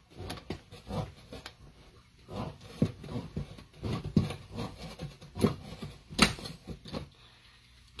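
Pampered Chef can opener being turned around a can's lid: a run of irregular clicks and ticks, with a few louder clicks in the middle, stopping about a second before the end.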